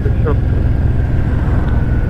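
Cruiser motorcycle engine running with a steady low rumble at low road speed, heard from the rider's seat, with a faint steady high whine above it.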